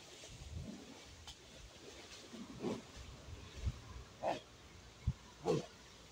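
A man in cold creek water of about 10 °C letting out a series of short grunts and gasps, roughly a second apart, the loudest near the end.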